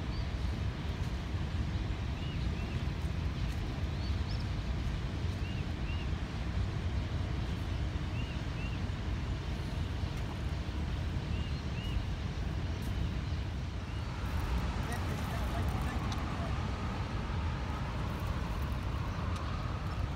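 Steady low outdoor rumble with faint high chirps recurring every second or two; about two thirds of the way through a faint wavering mid-pitched sound joins in.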